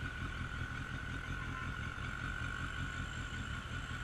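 Suzuki Bandit 1250S inline-four engine running at low speed in slow traffic, a steady low rumble with no revving. A faint steady high whine runs through it.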